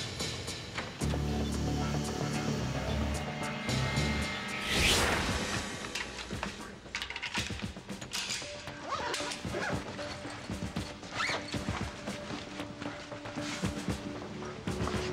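Dark, suspenseful film score with low held tones. About five seconds in comes a loud rushing swell, followed by a run of short clicks and knocks over the music.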